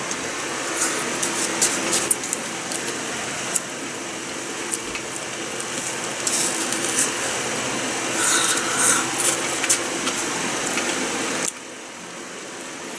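Wooden spoon scraping and digging into melon shaved ice in a plastic cup: a steady rasping scrape with scattered crisp clicks and crunches. It cuts off abruptly near the end.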